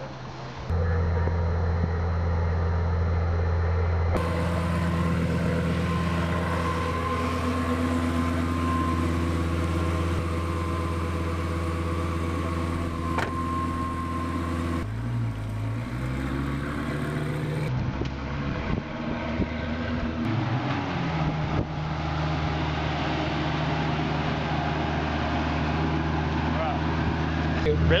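Lamborghini Gallardo V10, an Underground Racing build, idling steadily. About halfway through there are a few throttle blips with the pitch rising and falling, and then it settles back to a steady idle.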